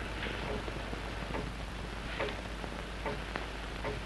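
Steady hiss and low hum of an old 1930s optical film soundtrack, with faint, irregular soft ticks scattered through it.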